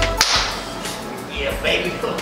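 Background music cuts off suddenly with a single sharp crack shortly after the start, followed by a few faint short sounds near the end.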